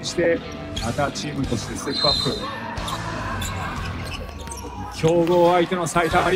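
A basketball being dribbled on a hardwood gym floor, several sharp bounces, under voices, with a loud voice near the end.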